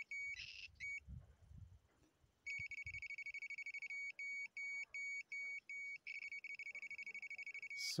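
Homemade ionic long range locator's electronic beeper sounding in rapid, steady-pitched pulsed beeps. It stops about a second in and resumes about two and a half seconds in, nearly continuous near the end. The beeping signals that the locator is picking up a nearby mobile phone screen.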